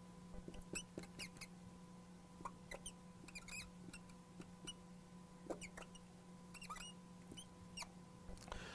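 Marker pen writing on a glass lightboard: a scattering of faint short squeaks and ticks as each stroke of the formula is drawn, over a steady low electrical hum.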